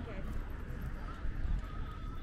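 Passers-by talking and footsteps on the planked pier walkway, over a low steady rumble.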